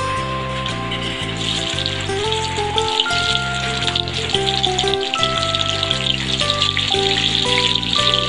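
Background music with a steady bass line, over the sizzling of garlic, onion and bell pepper dropped into hot oil in a wok. The sizzle grows louder about a second and a half in.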